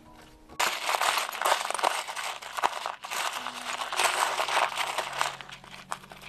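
Hands rummaging through a plastic tub of sea glass and small beach pebbles: a dense clattering and crunching of glass and stone on one another. It starts suddenly about half a second in and runs in two long spells, with a brief lull near the middle.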